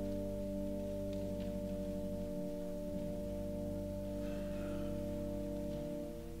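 Church prelude music: slow, sustained chords held for seconds at a time, changing about two and a half seconds in and again near the end.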